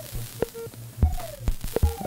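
Ciat-Lonbarde Plumbutter drum and drama machine playing a patch: a few sharp electronic clicks and a short tone that falls in pitch about a second in, over a constant hiss of white noise and a low hum.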